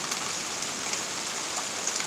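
Steady rain falling in a thunderstorm, an even hiss with a few faint drop ticks.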